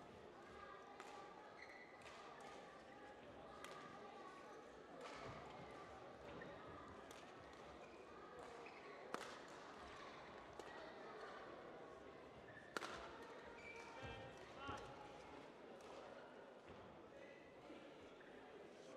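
Badminton rally: rackets striking a shuttlecock, a string of short sharp clicks every second or two, faint in a large hall. The two sharpest hits come about nine and thirteen seconds in.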